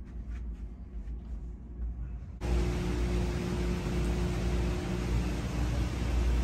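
Low indoor room hum with a few faint clicks, then, a little over two seconds in, a sudden switch to a louder steady hiss over a low hum.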